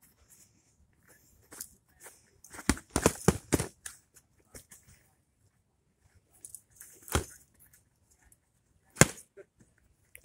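Foam-padded sparring swords striking padded shields and bodies: a quick flurry of sharp hits about three seconds in, then two single sharp hits later on.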